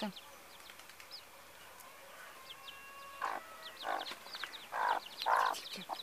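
Young chicks peeping in short, high, falling cheeps, busier in the second half, with a hen clucking four times from about three seconds in.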